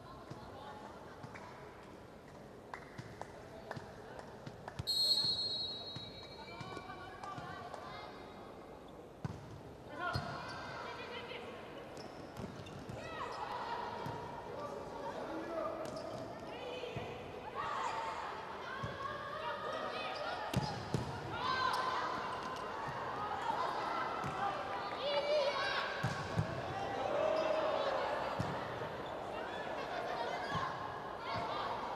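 A referee's whistle blows once, a short high-pitched blast about five seconds in. A volleyball rally follows, with sharp hits of the ball and arena crowd voices and cheering growing louder.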